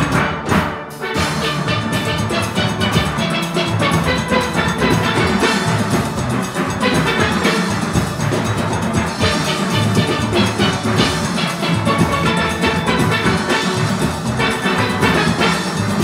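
A full steel orchestra playing: many steel pans struck together with drums and percussion underneath. The music dips briefly just under a second in, then carries on densely.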